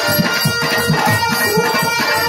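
Live stage-show band music: a quick drum rhythm under long held instrumental notes.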